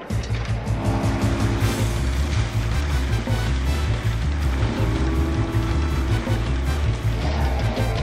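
Cartoon sound effect of an outboard motor boat running at speed, mixed with background music that has a steady beat.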